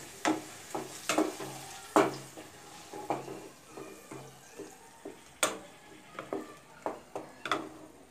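A wooden spatula scraping and knocking against a kadai as grated carrot is stirred and fried in ghee, with a faint sizzle underneath. The knocks come irregularly, the loudest about two seconds in and again about five and a half seconds in.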